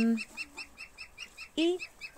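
A bird chirping in a rapid, even series of short high notes, about six a second.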